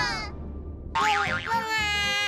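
Cartoon sound effect on a children's TV soundtrack: a high pitched tone that starts about a second in, wobbles rapidly up and down at first, then holds and sinks slightly, after the last of a held musical note fades at the start.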